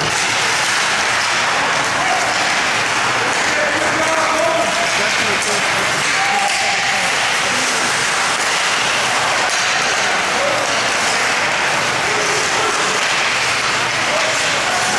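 Ice hockey rink ambience during play: a steady, loud noisy din with scattered distant shouts from players and spectators.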